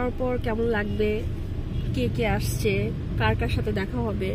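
A woman talking over the steady low rumble of a car cabin on the move.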